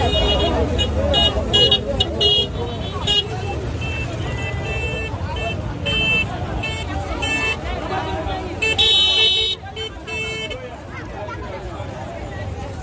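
Vehicle horns on a crowded street honking in many short beeps, with one longer blast about nine seconds in, over crowd chatter and the low rumble of engines.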